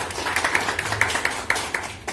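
Small audience clapping by hand, stopping near the end.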